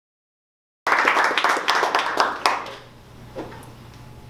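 Audience applause, starting abruptly about a second in and dying away by about three seconds.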